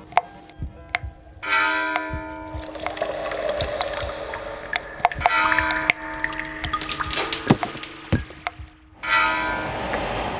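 Running water with sharp drips and clicks, over several steady, bell-like held tones.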